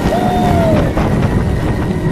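Roller coaster train of motorbike-and-sidecar cars running along its track: a steady low rumble with wind on the microphone. A single high tone holds, then falls in pitch over the first second, and a few sharp clicks come about a second in.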